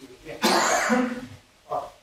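A person coughs once, a loud rough burst that starts about half a second in and lasts under a second.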